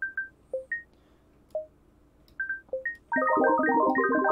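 Short plucked synth notes from FL Studio's Sytrus, playing randomly generated notes of a minor seventh chord. A few scattered single notes come first, then about three seconds in a dense, quick cascade of many notes starts: a twinkling effect.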